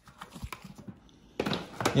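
Irregular light plastic clicks and knocks from a Shark Lift-Away upright vacuum being handled and tipped, with a louder clatter about one and a half seconds in.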